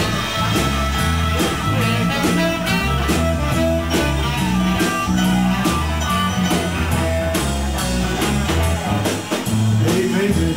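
Live blues-rock band playing an instrumental break: electric guitar over bass and drum kit, with saxophone, keeping a steady beat.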